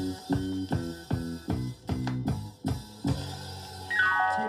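A 45 rpm vinyl single playing an instrumental passage: a steady drum beat of about two and a half hits a second over a low bass line. A falling run of notes begins right at the end.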